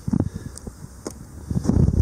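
Wind buffeting the microphone in irregular low gusts, with scattered knocks, louder near the end.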